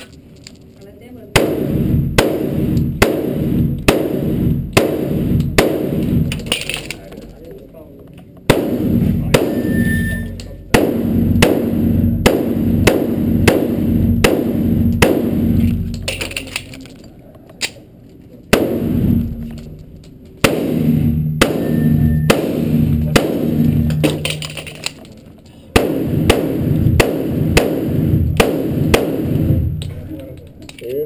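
A 1911 pistol firing rapid strings of shots in an indoor range, each shot echoing heavily off the walls, with short pauses between strings as the shooter moves and reloads. Steel plates ring briefly when hit, twice.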